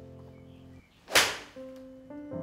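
A golf iron strikes a ball off a practice mat: one sharp, crisp crack about a second in, fading quickly, over soft background music.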